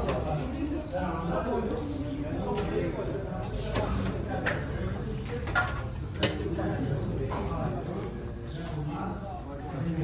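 Indistinct chatter of several people in a busy room, with a few sharp clicks in the middle, the loudest about six seconds in.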